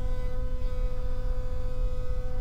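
Router in a router table running steadily with a half-inch spiral upcut bit while a deep mortise is cut: a steady hum with a clear tone.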